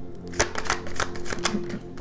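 A deck of tarot cards being shuffled by hand: a quick run of sharp card clicks starting about half a second in, over soft background music.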